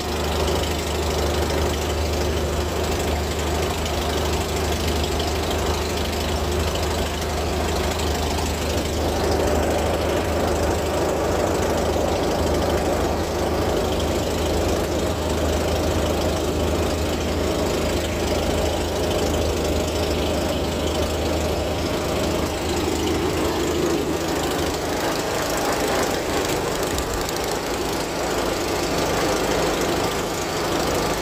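Light aircraft piston engine idling steadily at about 1200 rpm, heard from inside the cockpit, its low drone thinning a little near the end.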